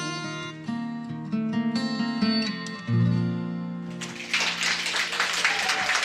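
Acoustic guitar with the band playing the song's closing instrumental bars, with held chords and a low bass note coming in about three seconds in. From about four seconds in, a dense, crackling wash of noise takes over.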